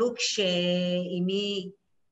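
Speech: a woman's voice says a short syllable, then holds one long, level "uhh" for more than a second as a hesitation between words.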